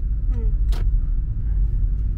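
Steady low rumble of a car driving on a paved street, heard from inside the cabin, with a single sharp click a little under a second in.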